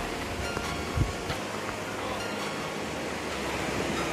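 Steady wash of small waves breaking on a sandy beach, with a brief low thump about a second in.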